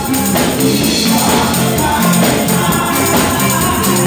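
Gospel praise song sung by a small group of women at microphones over steady instrumental accompaniment.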